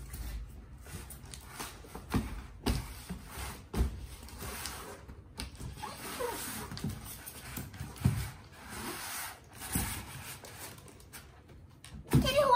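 Styrofoam packing blocks rubbing and squeaking against a cardboard box as a boxed laser printer is unpacked by hand, with irregular knocks and rustles and a few short squeaks a little past the middle.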